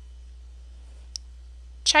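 A steady low hum under a pause, with one short, sharp click about a second in. Narration starts right at the end.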